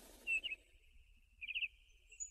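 Faint bird chirps in the background: a short chirp about a third of a second in, then a quick trill of several notes about a second and a half in.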